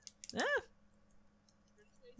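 A brief voiced sound from a commentator about half a second in, its pitch rising and then falling. Faint small clicks are scattered through the rest.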